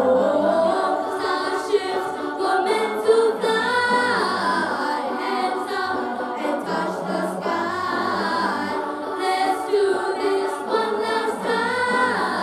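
A group of young students singing together into handheld microphones, amplified over a stage sound system, several voices sounding at once in a continuous choral song.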